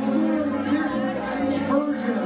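A live band plays a groove of held bass notes that change about every half second. A man's voice comes over it through the PA microphone.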